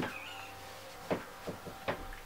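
A few soft footsteps on a floor over quiet room tone: short thuds about a second in and again near the end.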